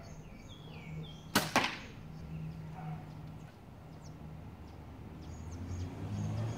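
A Hoyt CRX 35 compound bow with a 60 lb draw shooting an arrow: a sharp crack as the string is released, then a second crack about a fifth of a second later as the arrow strikes the target.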